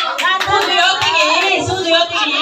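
Hands clapping amid a crowd's loud chatter and some singing, with sharp claps and a low thump recurring a little under twice a second.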